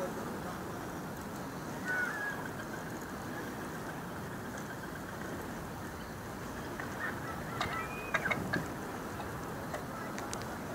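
Bird calls over a steady rush of wind and sea: one short call about two seconds in, then a quick cluster of short calls near the end.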